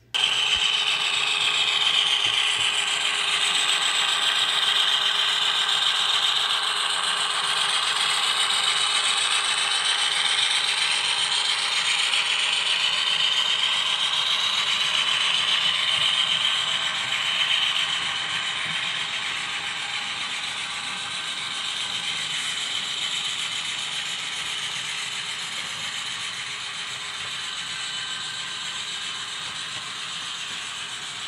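HO scale model well cars with metal wheels rolling past on track, their wheels clattering and rattling steadily on the rails. It eases off a little about two-thirds of the way through.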